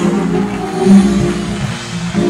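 Organ holding sustained low chords, moving to a new chord about a second in, as backing music under the sermon's climax.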